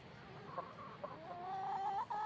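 Domestic chickens clucking. About a second in, one long call begins, rising slowly in pitch and growing louder.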